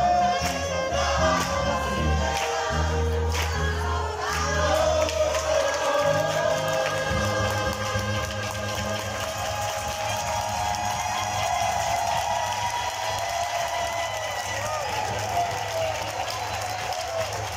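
A mixed choir singing with saxophone and keyboard accompaniment over a steady low bass line.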